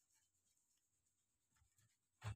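Near silence: the sound track is all but empty.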